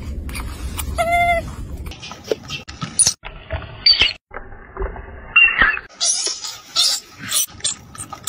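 Macaques squealing: one short pitched call about a second in, then a run of short, high-pitched shrieks, several of them loud, from an infant held and grabbed by adults.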